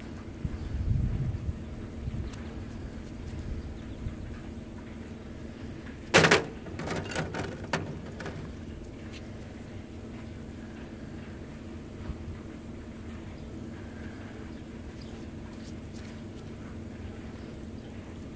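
Pieces of native copper being handled on a metal mesh sifting screen: one sharp knock about six seconds in and a few lighter clatters after it, over a steady low hum, with a low rumble about a second in.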